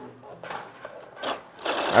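The small motor and gears of a homemade model engine start whirring about one and a half seconds in, a steady, fine-grained mechanical whir.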